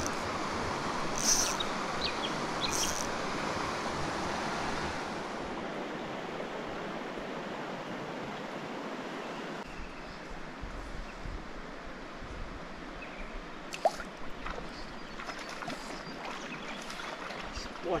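Shallow creek water running over stones: a steady rush, louder for the first few seconds and softer later, with one sharp click about fourteen seconds in.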